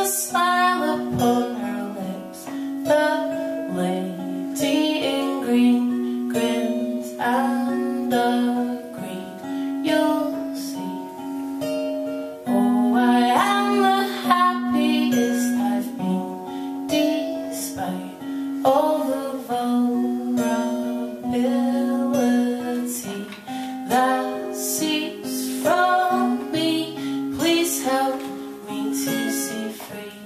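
A woman singing with her own strummed acoustic guitar, played live and unamplified-sounding, with the guitar holding a steady low note under the chords.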